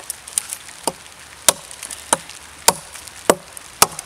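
A CRKT Ma-Chete machete with a 1075 steel blade chopping into a log: a steady run of about seven sharp wooden chops, a bit under two a second, some lighter than others.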